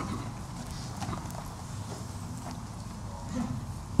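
Quiet room noise with a few faint scattered clicks and shuffles.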